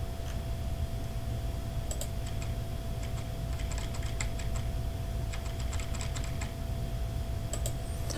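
Scattered clicks and scroll-wheel ticks from a computer mouse as files are scrolled through and selected, with a run of quick ticks in the middle, over a steady low hum.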